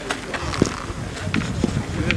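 Outdoor sound of a petanque game on gravel: background voices with a few short sharp clicks and knocks, the loudest a little over half a second in.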